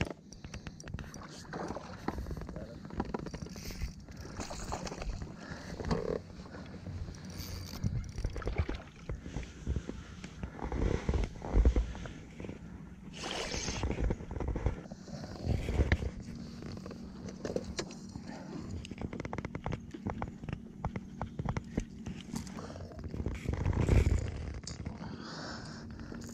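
Fighting and landing a barramundi from a plastic kayak: irregular knocks and scrapes against the hull and water splashing, with louder bursts around the middle and near the end as the fish comes alongside and is lifted out.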